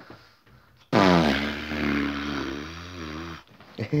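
A young man's voice making one long, low, wordless sound that starts suddenly about a second in and lasts about two and a half seconds, its pitch dropping at the start and then wavering.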